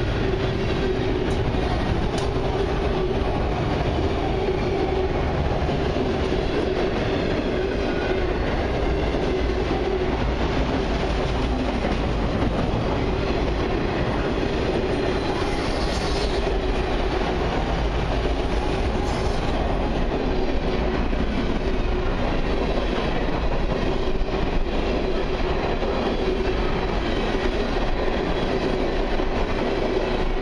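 Freight cars rolling past at speed: autoracks, a tank car and covered hoppers, steel wheels running on rail in a steady, unbroken rumble with a constant tone running under it.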